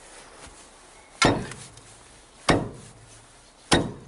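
Iron pry bar jabbed against the base of a corrugated-metal shed in an attempt to lever it over: three sharp blows about a second and a quarter apart, each ringing briefly.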